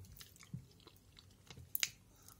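Close-up chewing and mouth sounds of someone eating rice porridge from a metal spoon, with faint scattered clicks and one sharper click near the end.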